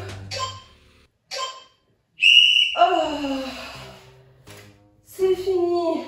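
Background music with vocals. About two seconds in, a high steady whistle-like tone sounds for about a second and a half as the workout countdown timer runs out, signalling the end of the exercise interval.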